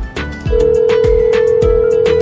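Background music with a steady beat, and a single long phone ringback tone from an outgoing mobile call that starts about half a second in and holds steady.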